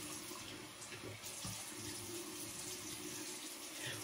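Bathroom sink faucet running warm water steadily into the basin while it is splashed onto a face by hand.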